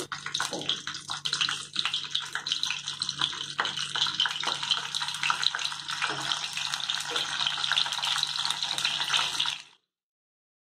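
Wet whole tomatoes sizzling in a hot non-stick kadai on a gas burner, a steady crackling hiss with a few soft knocks as each tomato is set into the pan. The sound cuts off suddenly near the end.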